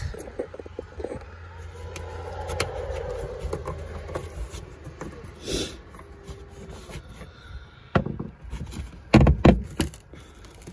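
Hands working on a car's trunk lining: a plastic retainer nut twisted off its stud and the carpet liner pulled back, giving scrapes, rustles and small clicks. The loudest rustling knocks come near the end, over a low steady hum.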